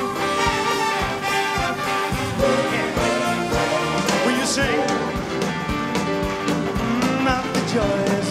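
Live band playing an upbeat instrumental passage, with a steady drum beat under held brass and band chords.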